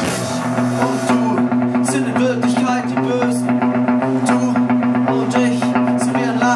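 Rock band playing live with electric guitar, bass guitar and drum kit. A dense loud wash of sound thins out right at the start into a low note held steady, picked guitar notes and regular drum and cymbal strikes.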